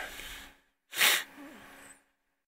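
A short, sharp breath noise close to the microphone about a second in, lasting under half a second.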